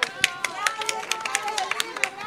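Scattered hand clapping from a small group of people, irregular sharp claps, with voices chattering underneath.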